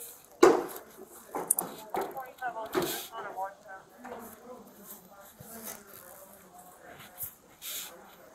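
Indistinct speech with a loud thump about half a second in and further knocks, along with fabric rubbing against a body-worn camera as the wearer's sleeve passes over the lens.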